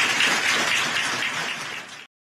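Audience applauding, a dense, even clatter of many hands that tapers slightly near the end and then cuts off suddenly.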